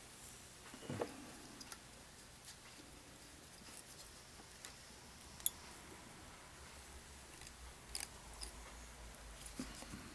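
Faint fly-tying handling sounds: a few small, isolated clicks and soft rustles as peacock herl is tied onto a jig hook with thread at the vise.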